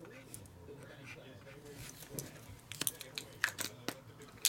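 Marker pen scratching faintly as it writes on the cardboard of stacked sealed card boxes, then a quick cluster of sharp clicks and taps near the end as the pen and boxes are handled.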